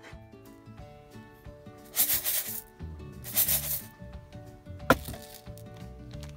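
Two brief rustling, hissing bursts, then one sharp knock as a metal camping pot holding rice is set down on a wooden cutting board, over background music.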